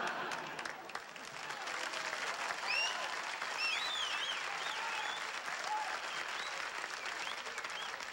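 Studio audience applauding after a punchline, with several short rising-and-falling whistles about three to five seconds in.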